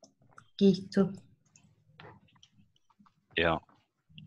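Light clicking of a computer keyboard as a word is deleted and retyped, with two short voice sounds about half a second and a second in and a spoken 'yeah' near the end.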